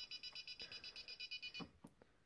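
Piezoelectric speaker driven by an Arduino beeping rapidly, about ten short high-pitched beeps a second: the reminder alarm telling the user to put the item back. It cuts off suddenly near the end as the item is returned, followed by a single click.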